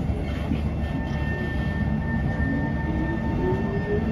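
SMRT C151 train heard from inside the carriage as it pulls away from a station: a low rumble with a traction-motor whine rising slowly in pitch as the train gathers speed. Thin steady high tones come in about a second in.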